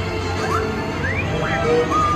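Dark ride's show soundtrack: music over a steady low hum, with several short rising sci-fi sound effects about half a second, one second and a second and a half in.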